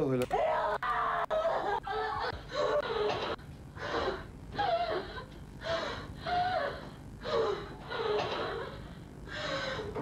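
A woman crying hard: gasping sobs and wailing cries, one after another about once a second.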